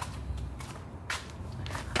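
A few footsteps and light clicks on a concrete garage floor over a low, steady hum.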